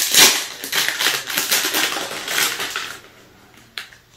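A plastic blind-bag wrapper of a toy car crinkling and tearing as it is pulled open by hand. The crackling stops about three seconds in, and a single sharp click follows near the end.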